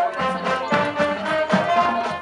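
High school marching band playing its field show: held brass chords over steady drum beats.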